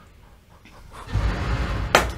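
A horror film soundtrack: a hush, then a low rumble swelling up from about halfway, ending in one sharp knock near the end as a cigarette lighter is dropped and the picture goes dark.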